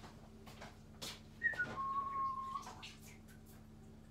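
A short whistle: two quick higher notes stepping down into a lower note held for under a second, with a few faint knocks around it.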